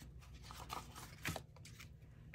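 Faint rustling of paper money and cards being handled on a desk: a few soft crinkles and light taps, the clearest about a second in.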